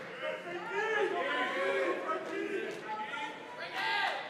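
Indistinct chatter of an audience talking among themselves in a large hall, several voices overlapping.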